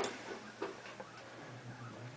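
A sharp knock, then a few faint scattered ticks and clicks over a low steady hum that comes up near the end.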